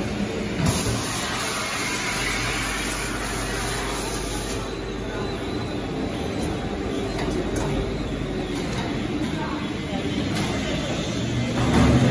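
Meat-packaging conveyor machinery running steadily, with a stretch of hiss from about one to four and a half seconds in.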